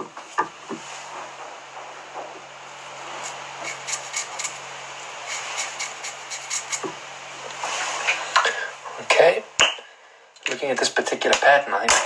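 Red Artline permanent marker scratching and rubbing over the fibres of a fly held in a tying vise, close to the microphone, with many small clicks of handling. It is louder around eight seconds in. A voice starts near the end.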